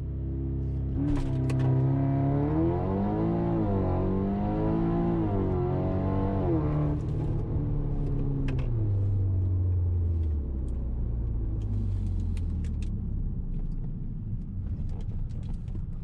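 Audi TTS's tuned, turbocharged four-cylinder with a catless exhaust, heard from inside the cabin, launching on launch control and pulling hard through the gears. The engine note rises and dips with quick gear changes, then the driver lifts off about seven seconds in and it drops to a low, fading drone as the car coasts.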